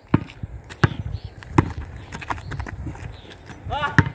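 A basketball being dribbled on asphalt: sharp bounces about every three-quarters of a second, then a short shout near the end.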